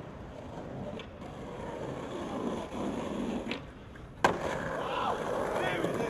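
Skateboard wheels rolling on plaza paving, with a couple of light clicks, then one sharp, loud clack of the board a little past four seconds. Voices shouting near the end.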